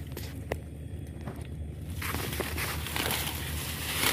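Footsteps and rustling as someone pushes through dense grass and brush, with a few light snaps early and the brushing of leaves growing louder from about halfway.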